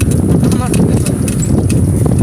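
Steady rumbling wind and road noise from riding a bicycle on a paved road, with scattered light rattling clicks.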